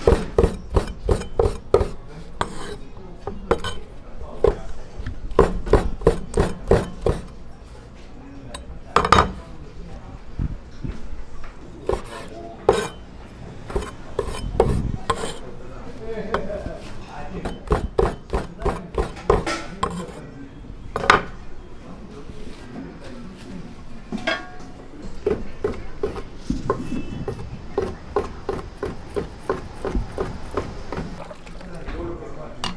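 Kitchen knife chopping boiled pork intestines and soondae on a wooden cutting board: runs of quick knocks, about four or five a second, broken by short pauses.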